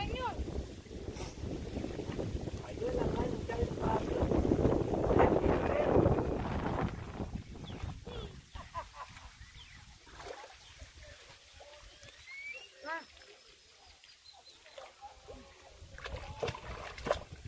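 Wind buffeting the microphone over rippling lake water, loudest in the first seven seconds. It then grows quieter, with a few faint short calls.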